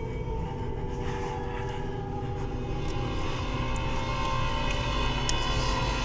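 Dark, droning horror-film score: low rumble under several held tones, slowly swelling in loudness, with a couple of sharp high ticks near the end.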